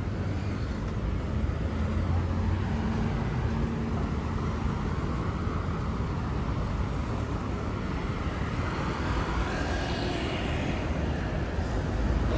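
Outdoor city ambience: a steady low rumble of traffic with faint voices of passers-by, the chatter growing a little clearer near the end.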